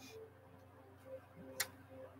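Tarot cards handled at a table: a single sharp click about one and a half seconds in, with faint small rustles of the cards around it against quiet room tone.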